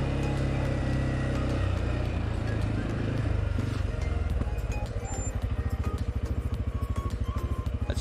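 Single-cylinder engine of a CF Moto 520L ATV running steadily, then dropping to idle about halfway through, where it settles into an even thumping of about ten beats a second.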